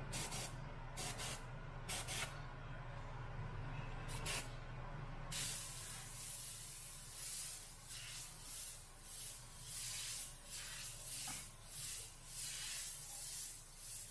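Omni 3000 airbrush spraying paint. A few short bursts of hiss come in the first four seconds, then near-continuous hiss from about five seconds in, swelling and easing with each letter stroke, over a steady low hum.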